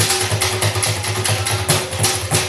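A percussion ensemble playing drums made from scrap materials (painted plastic buckets and cans) in a busy, driving rhythm. Fast, even low drum hits land several times a second under bright, rattling strikes, with a steady held note running beneath them.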